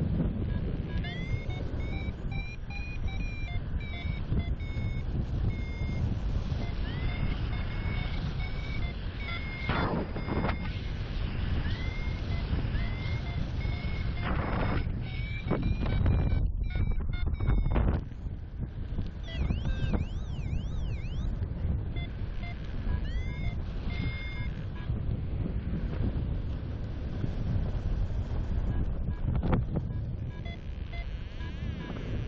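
Paragliding variometer beeping in short pitched pips, some sliding upward, over steady wind rush on the microphone in flight; the beeps signal a weak climb in lift.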